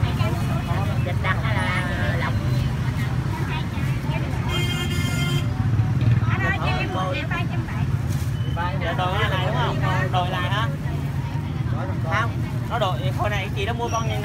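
Steady low rumble of street traffic under scattered voices of people talking nearby, with a high-pitched beep lasting about a second, roughly four and a half seconds in.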